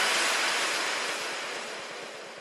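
The closing noise wash of an electronic dance track after its beat has stopped: a hiss-like sweep of noise fading steadily away.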